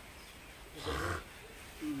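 A person's brief, rough, breathy vocal sound about a second in, then a short hummed "mm" near the end.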